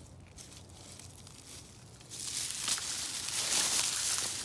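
Footsteps crunching through dry fallen leaves, starting about halfway through and louder from then on.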